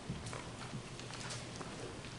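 Quiet pause with faint room tone and a few soft, light taps and rustles scattered through it.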